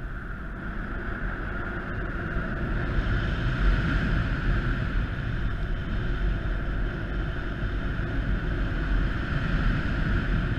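Rushing airflow of a paraglider in flight buffeting the camera microphone, a steady rumble with a constant hiss above it that grows louder about three seconds in.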